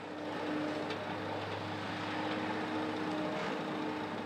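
Excavator's diesel engine running steadily with a constant hum.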